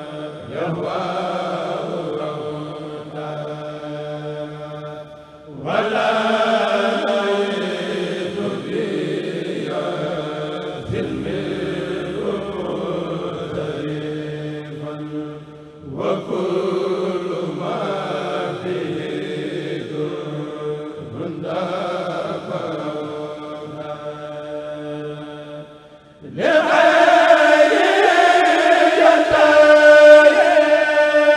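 A Mouride kurel, a group of men chanting Sufi qasidas together through a PA, in long phrases with short breaks for breath. The last phrase, a few seconds before the end, comes in clearly louder.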